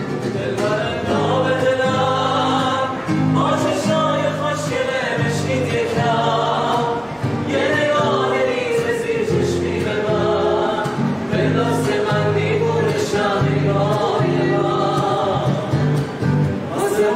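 A song played by a small band, with male voices singing together over guitars and a steady bass line.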